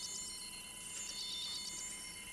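Electronic medical instrument giving a high, rapidly pulsing warble in bursts about a second long, with short gaps between them, over a faint steady electronic hum.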